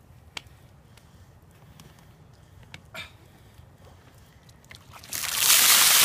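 A few faint clicks, then about five seconds in a container of ice water is tipped over a person's head: a sudden loud rush of pouring, splashing water.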